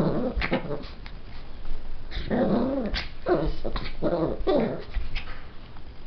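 Biewer terrier making short growling calls: one at the start, then four more in quick succession from about two seconds in.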